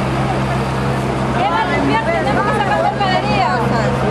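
An engine running steadily with a low drone, with several people talking over one another from about a second in.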